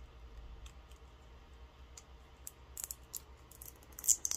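Faint clicks and crackles of plastic packaging being handled and pried at to get it open, growing busier in the last second and a half, over a low steady hum.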